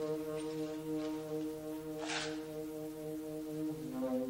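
Saxophone holding a long, steady low note, then moving to a higher note near the end. A single soft percussion stroke comes about halfway through.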